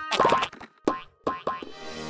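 Cartoon sound effects: a quick run of springy boing-like hits, about four of them with short silent gaps between, for bouncing balls. Light background music comes in near the end.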